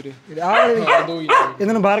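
Mostly talking, with dogs vocalizing in the background.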